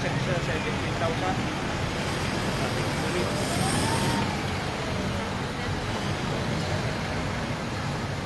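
Steady road noise of a vehicle motorcade, engines and tyres running on the road, with faint voices in the background. A brief tone rises and falls about three seconds in.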